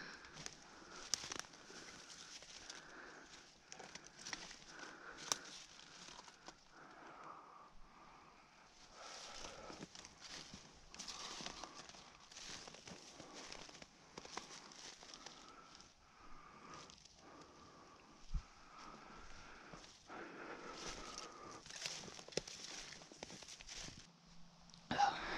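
Footsteps crunching irregularly through a thin layer of snow over dry leaf litter, with a few sharper clicks of snapping twigs; the loudest click comes about five seconds in.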